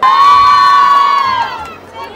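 Women's ulu, the high trilling ululation of a Bengali wedding: one loud, high call held for about a second and a half, then falling away in pitch.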